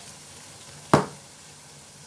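Chicken adobo sizzling steadily in a nonstick wok over a gas flame, with one sharp knock about a second in.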